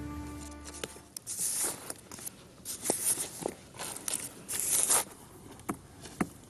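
Dry wooden sticks scraping and rustling as they are pushed into loose sand, in a series of short, hissy bursts with a few small clicks. A held music chord fades out in the first second.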